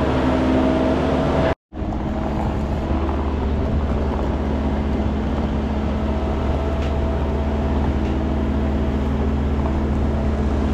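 Skid steer loader engine running steadily, with a brief silent break about a second and a half in.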